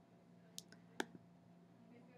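A few faint computer mouse clicks, the clearest about a second in, over near silence.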